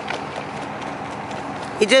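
Hoofbeats of an unshod horse trotting on gravel, faint ticks over a steady background hiss. A voice begins speaking near the end.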